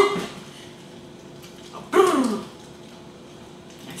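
A woman's voice making one short wordless vocal sound about two seconds in, falling in pitch, over a faint steady hum.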